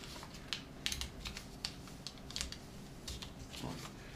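A square of origami paper being folded and creased by hand: a string of short, sharp paper crackles and rustles at irregular intervals.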